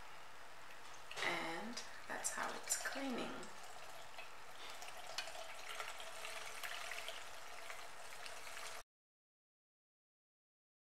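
Battery-powered makeup brush spinner running, a brush spinning in a bowl of soapy water with a steady hissing swish as the makeup rinses out. The sound cuts off abruptly near the end.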